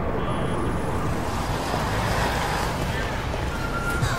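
Steady, noisy background ambience with faint, indistinct voices.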